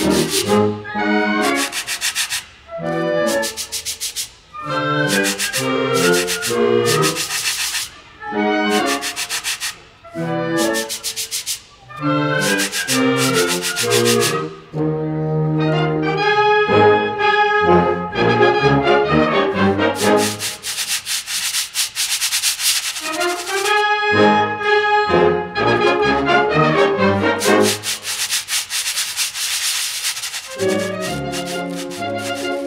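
Sandpaper blocks rubbed together in rhythmic, scratchy swishes as a featured solo part. A concert band with prominent brass plays the tune around them. The phrases are separated by brief pauses.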